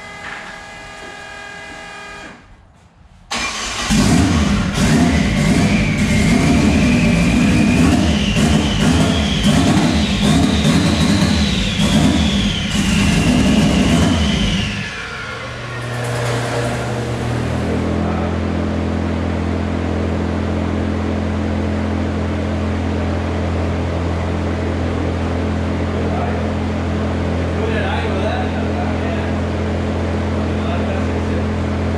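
Turbocharged Dodge Neon SRT-4's four-cylinder engine on a chassis dyno, starting a few seconds in and revving up and down for about ten seconds, then settling to a steady idle.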